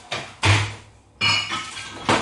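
Kitchen crockery and utensils knocking and clinking: a few sharp knocks, the loudest about half a second in, then a ringing clink just after a second in.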